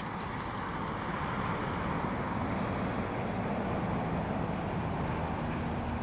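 Steady road traffic noise from vehicles passing.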